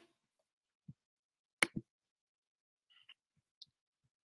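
Near silence broken by a few small clicks: a soft thump, then two sharp clicks close together about a second and a half in, and fainter ticks near the end.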